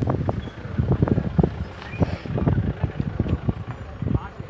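Wind buffeting a phone's microphone: irregular low rumbles and thumps.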